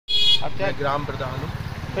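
A short high vehicle horn toot right at the start, then a motor vehicle engine running with a low, even throb under talk.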